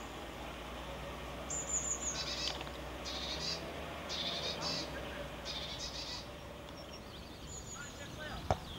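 A small bird singing nearby: four or five short bursts of rapid high chirps, over a steady outdoor background hum.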